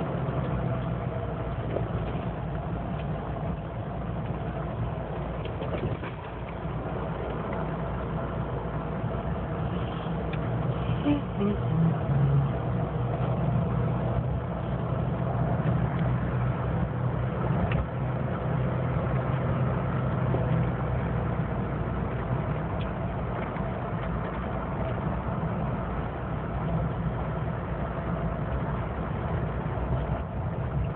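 Car driving along, heard from inside the cabin: a steady mix of engine hum and tyre and road noise.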